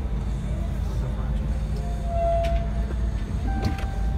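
Steady low rumble of a 2017 Ram Power Wagon's 6.4-litre HEMI V8 idling, heard from inside the cab, with faint music and a couple of brief tones over it.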